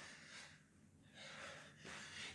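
Near silence, broken by a couple of faint breaths from a man exerting himself during a jumping exercise.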